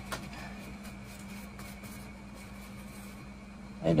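Steady low mechanical hum in a small room, with a faint click just after the start.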